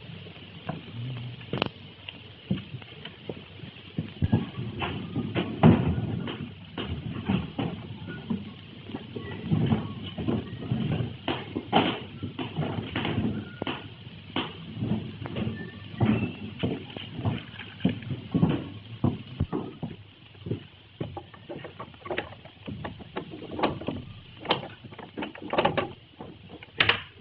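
A steady run of irregular knocks and taps, a few a second.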